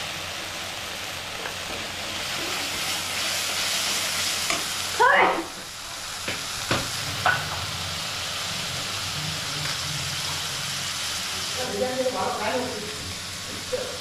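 Masala paste sizzling steadily as it fries in oil in a steel kadai, stirred and scraped with a steel spatula. One sharp knock sounds about halfway through.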